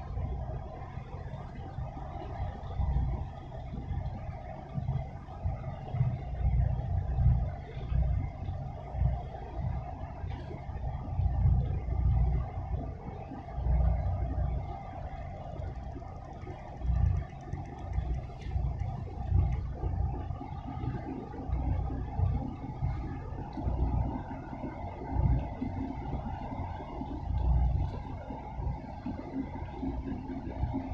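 Wind buffeting the microphone in irregular low rumbles, over a steady distant hum.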